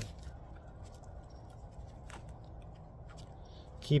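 Plastic grafting tape being stretched and wound tightly around a graft union: a few faint crinkles and clicks over a steady low background rumble.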